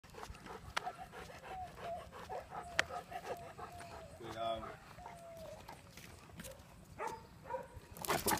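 A dog whining faintly in a run of short, high whimpers, with scattered light clicks from claws and a chain collar on concrete.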